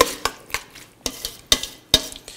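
A utensil stirring a thick mayonnaise dressing with diced apple, pickles and onion in a stainless steel mixing bowl, with a few sharp clicks of metal on the bowl, one about a second and a half in and another near the end.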